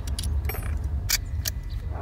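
Metallic clicks and clinks of rifles being handled, four sharp clicks spread across two seconds, over a steady low rumble.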